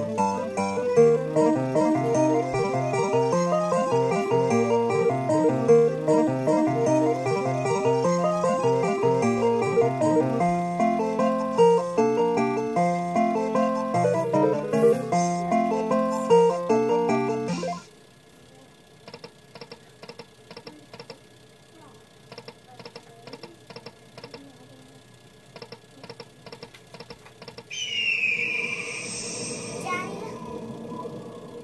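Aristocrat Buffalo slot machine's bonus win tune, a guitar-like melody, playing while the win meter counts up. It cuts off suddenly about two-thirds of the way through. A quieter stretch of regular light ticks follows, and a brief chiming sound near the end as the next free spin starts.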